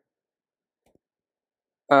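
Near silence, with one very faint brief tick about a second in. A man's voice starts just before the end.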